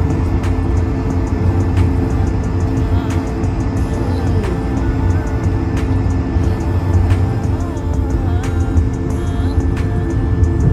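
Background music over the steady low rumble of a jet airliner taxiing, heard from inside the passenger cabin.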